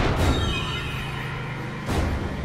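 Dramatic cartoon soundtrack: a steady low music bed with two short, sharp sound-effect hits, one right at the start and one near the end. A brief high, falling screech comes just after the first hit.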